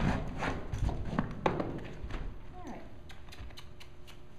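A horse's hooves knocking on a horse trailer floor as she backs out, a few uneven hoofbeats in the first two seconds.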